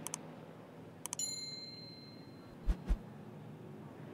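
Mouse-click sound effects followed by a short bright bell ding that rings out over about a second and a half, the kind laid over an animated subscribe or like button. Two soft thumps follow close together, over faint steady background noise.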